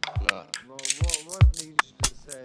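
Glitchy experimental electronic music: rapid clicking, ratchet-like percussion with a few deep kick-drum thumps and a wavering pitched tone in the middle.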